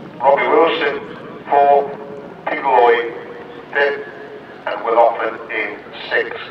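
A man talking in short phrases with pauses between them, over a steady background hiss.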